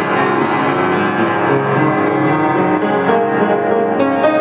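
A vintage 1910 upright piano played by ear, an improvised passage in G-flat with many notes ringing over one another.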